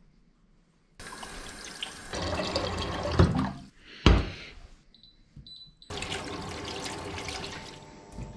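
Kitchen tap running into a sink: it comes on about a second in and stops shortly before a knock near the middle. After a short quieter pause it comes on again and runs steadily.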